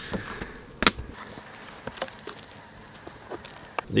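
Wooden beehive outer cover being lifted off and set down against the next hive: one sharp knock about a second in, then a few lighter clicks and knocks.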